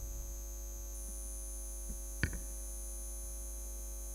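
Steady electrical mains hum and whine through a microphone and sound system, with one sharp knock a little over two seconds in.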